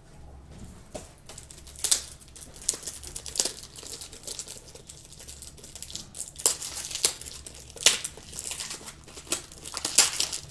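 Plastic or paper being handled and crumpled, a run of irregular crinkling crackles.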